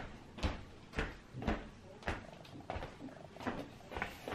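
A series of soft knocks and bumps, about one every half second, over a faint background.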